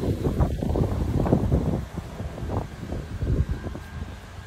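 Wind buffeting a phone microphone outdoors: a gusty, uneven rumble, strongest in the first two seconds and then easing off.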